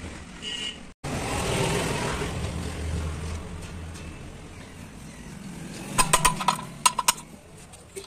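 A low rumble that swells and slowly fades, then a quick run of sharp metallic clinks about six seconds in as a steel ring spanner knocks against the truck clutch pressure plate and its bolts.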